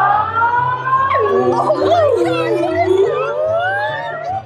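Several voices making long wordless cries that glide up and down in pitch and overlap one another, over background music with a steady stepping bass line.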